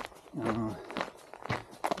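Brisk hiking footsteps on a gravel forest road, about two steps a second, with a short bit of voice about half a second in.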